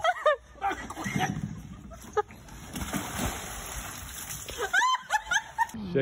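A heavy splash as a man drops backwards off the rim of an above-ground pool into the water, followed by a few seconds of water sloshing.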